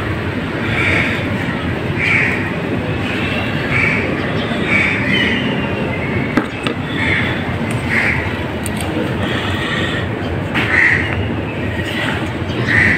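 Steady rumbling background noise with short, high chirps every second or two.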